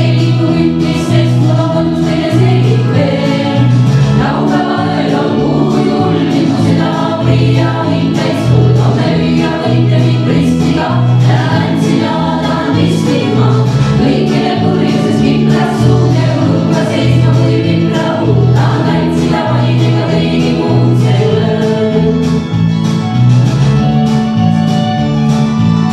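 A small female vocal ensemble singing together into microphones, over a low accompaniment that changes note in a steady, even rhythm.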